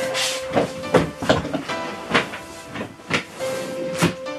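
Background music with steady held notes, over irregular rustling and short knocks of clothes being rummaged through while someone searches for a garment.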